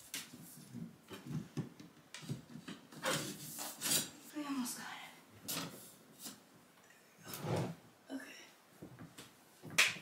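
Sheer fabric curtains being handled and slid along a curtain rod: light rustling with scattered clicks and knocks at uneven intervals.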